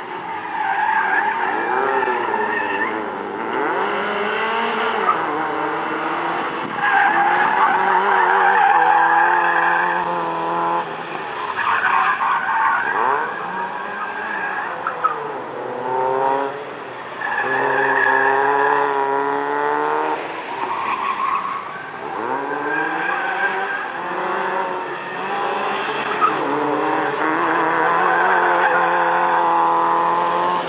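Fiat Seicento's engine revving hard through the gears and backing off over and over, its pitch climbing in repeated rises and dropping every few seconds, with tyres squealing and skidding on the paving in the tight turns.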